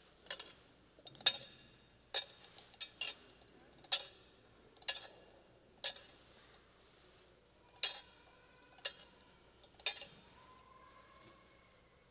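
A metal thurible being swung during incensing, its chains and lid clinking against the censer bowl in sharp, ringing metallic clinks about once a second, about a dozen in all.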